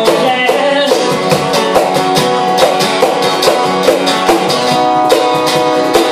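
Live acoustic guitar strumming chords with a cajon played by hand, keeping a steady beat of about two to three hits a second; an instrumental stretch of a song.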